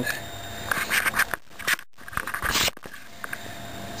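Short scraping and clattering as the Mossberg 500 shotgun's collapsible stock is handled. The scrapes come about a second in and again around two and a half seconds, with a brief dropout in the sound between them.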